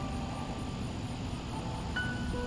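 A steady low outdoor rumble fills a lull in soft guitar and piano background music, with a new note coming in at the very end.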